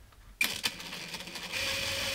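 Cordless drill driving a mounting screw into a wooden plank wall. The motor starts suddenly about half a second in and settles into a steady whine from about a second and a half in.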